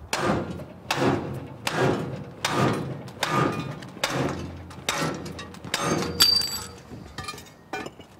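Flat-head axe striking the end of a Halligan bar to drive its pike into the shackle of a discus padlock: about eight heavy metal-on-metal blows, roughly one every 0.8 s, each ringing briefly. A sharper ringing strike comes a little after six seconds, followed by a few lighter metallic clicks as the lock splits apart at its seam.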